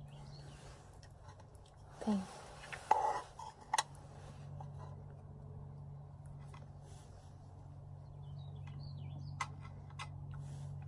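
Quiet outdoor background with a steady low hum, a brief murmur of voice about two seconds in, a few small clicks just after, and faint bird chirps near the end.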